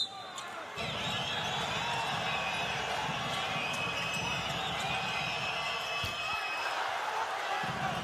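Live basketball game sound: sneakers squeaking on the hardwood court and the ball bouncing, over the steady noise of the arena crowd. The sound changes abruptly about a second in, at a cut between two plays.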